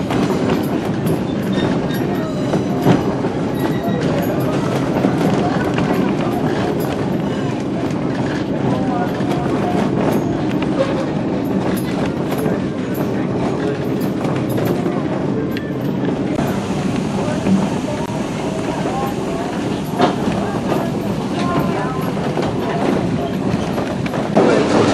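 Passenger railroad coach rolling along the track, heard from aboard: a steady rumble of wheels on rail with scattered clicks and knocks, under a background murmur of passenger chatter.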